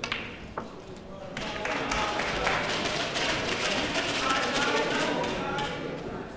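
A snooker cue strikes the cue ball with a sharp click, and a second click of ball on ball follows a moment later as the black is potted. About a second and a half in, the audience breaks into loud applause that carries on.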